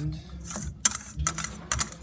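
Metal wire whisk stirring chocolate ganache in a glass bowl, its wires clicking against the glass a few times over a low steady hum.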